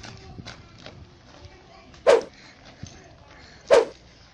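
A dog barking twice, two short loud barks about a second and a half apart, over a faint outdoor background.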